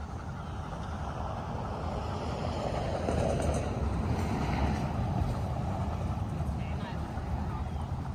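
Traffic noise from a vehicle passing on the street: a steady rumble that swells to its loudest in the middle and then eases off.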